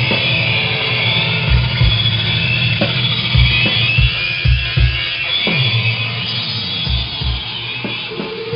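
Technical death metal playing loud: a wall of distorted guitar over irregular kick drum hits.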